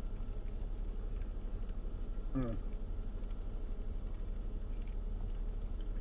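A man tasting a spoonful of strawberry shortcake ice cream, silent but for one short, falling "mm" of approval about two and a half seconds in, over a steady low hum in a car's cabin.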